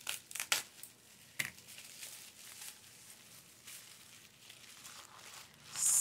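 Bubble wrap crinkling and rustling as it is unwrapped by hand: a cluster of crackles in the first second and a half, quieter handling after that, and another rustle near the end.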